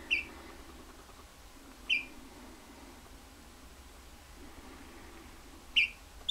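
Canada gosling peeping: three short, high peeps, each dropping slightly in pitch, one at the start, one about two seconds in and one near the end. The keeper voices these calls as 'I want out'.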